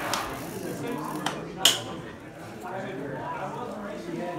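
Two sharp clicks about a second and a half apart from the start, the second one louder: cycling shoe cleats snapping into clipless pedals as the rider mounts the bike on the trainer. Indistinct voices in the room run underneath.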